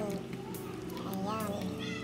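A person's voice making one short wavering syllable over a steady low hum.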